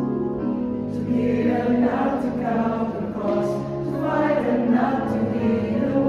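Mixed church choir of women's and men's voices singing a hymn in parts, with long sustained chords from a keyboard underneath.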